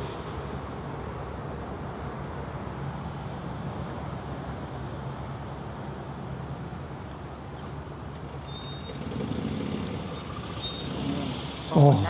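Steady outdoor background noise with a faint low hum and no distinct events, typical of open-air ambience on a golf course. A spoken "Oh" comes at the very end.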